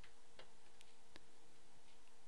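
Faint clicks at a computer, four light taps in about the first second and a half, over a steady faint hiss and low hum.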